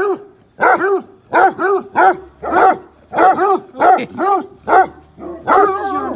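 Basset hounds barking in a steady run of short barks, about two a second, each bark rising and falling in pitch.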